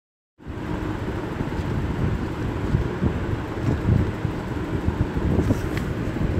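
Steady low rumbling background noise with no speech. It starts abruptly about half a second in and has most of its weight in the low end.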